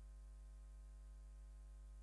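Near silence with a steady low electrical hum that does not change.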